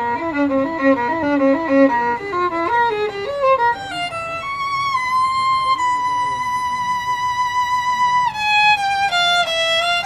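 Solo violin playing an improvised line: quick short notes for the first couple of seconds, then a falling run. A long high note is held for about two seconds before it steps down to another sustained note near the end.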